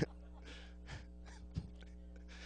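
A man laughing almost silently into a microphone, heard only as a few faint, breathy gasps, over a low steady electrical hum.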